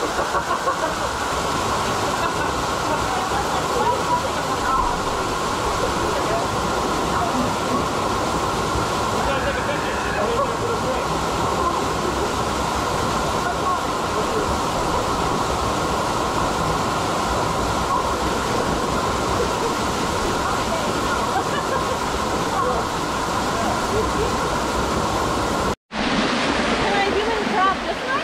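Small waterfall pouring onto rocks and a shallow pool: a steady, loud rush of falling water, with people's voices faintly under it. Near the end it cuts off abruptly for a moment.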